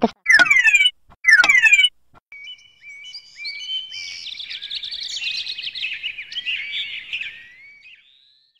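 Birds chirping and trilling, a busy mix of high songbird calls that fades away near the end. Before it, in the first two seconds, come two short, loud sweeping calls about a second apart.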